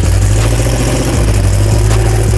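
Turbocharged pickup truck's engine idling, loud and steady with a deep low-pitched note.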